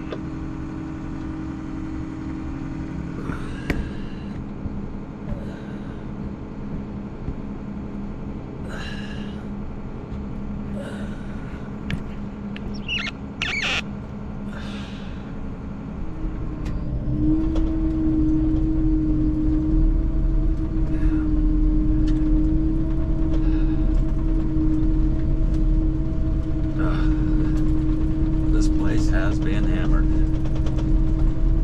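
An engine drones steadily in a low hum. About sixteen seconds in it grows louder and its pitch rises a little, as if under more power, then holds steady.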